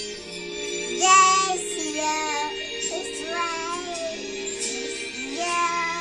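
A toddler sings along with a karaoke backing track, in short sung phrases over steady music. The loudest sung note comes about a second in.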